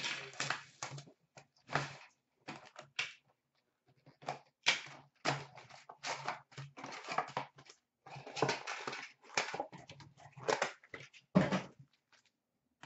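Hands handling a cardboard hockey card box and trading cards: irregular rustles, scrapes and taps, one after another with short gaps.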